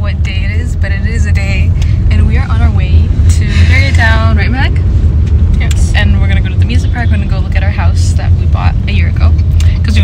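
A steady low rumble of road and engine noise inside a moving car's cabin, under people talking.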